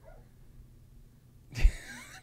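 A quiet pause, then about a second and a half in a man's single short laughing breath hits a close microphone with a low thump.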